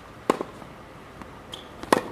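Tennis ball being struck during a rally: a sharp knock with a quick second knock right after it, a quarter second in, then a louder racket-on-ball hit near the end as the near player swings a forehand.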